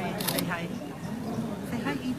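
People talking, with a quick cluster of camera shutter clicks about a quarter second in.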